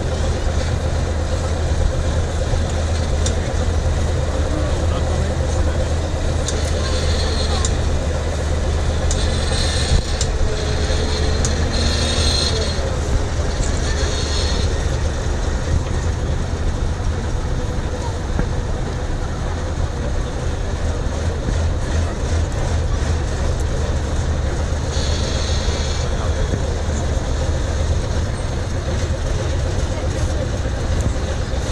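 Tatra 815 6x6 truck's diesel engine running steadily at low speed as the truck crawls across a steep off-road slope, with crowd chatter throughout. A few brief higher-pitched bursts come in the first half and once more later.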